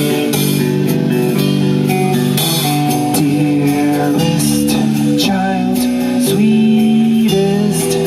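Live rock band playing: a distorted electric guitar through a Marshall amp playing chords over a drum kit with cymbals.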